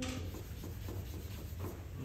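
Stick of drawing charcoal scratching and rubbing across paper on a drawing board in short shading strokes, the first stroke the loudest.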